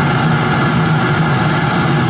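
Waste-oil burner in a converted gas water heater running on used vegetable oil: a loud, steady low rumble of the burning fire, unchanging throughout.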